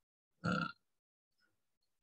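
A single short vocal 'uh' lasting about a third of a second, about half a second in, with silence around it.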